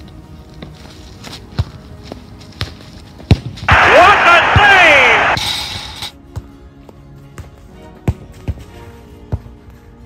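A football kicked and bouncing on a frozen, snowy pitch: several sharp thuds, the hardest a little after three seconds in. It is followed at once by a loud cry, falling in pitch, that lasts over a second.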